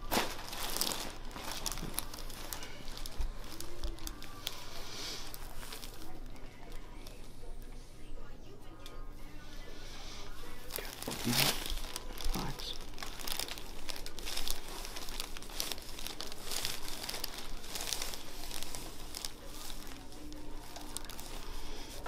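Paper cover on a chiropractic table's headrest crinkling and rustling under the patient's face as her head and neck are pressed and moved by hand. Two sharper knocks come about eleven and twelve seconds in.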